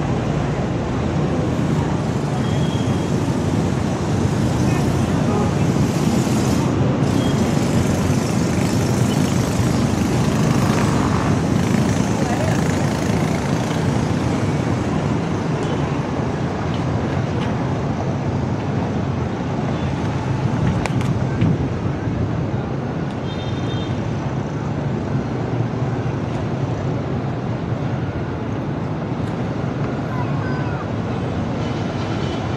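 Steady outdoor city noise, mostly a continuous rumble of road traffic, with a short high-pitched beep about three-quarters of the way through.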